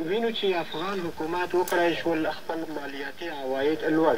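Belarus-59 tube radiogram tuned to a shortwave station: a voice talking in a foreign language comes from its loudspeaker, starting suddenly at the beginning and running on.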